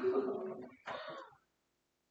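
A person clearing their throat twice: a longer clearing at the start and a shorter one about a second later.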